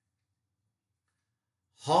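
Near silence, then a man's voice starts speaking near the end.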